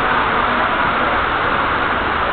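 Steady, even background noise of a busy mall hall, an indistinct hubbub with no single event standing out.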